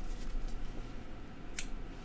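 Fly-tying scissors being handled: quiet rustling with one short, sharp click about one and a half seconds in.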